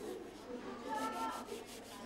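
Hand sanding of a wooden chair leg with a sheet of sandpaper: quick back-and-forth rubbing strokes, louder around the middle.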